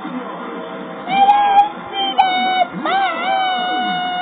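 Television game-show audio: theme music, then from about a second in a voice calling out long, drawn-out held notes whose pitch swoops up and down at the start of each. The sound is thin, cut off in the treble, as it comes off the TV's speakers.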